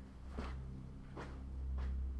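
Three soft knocks or taps, spaced well under a second apart, over a steady low electrical hum.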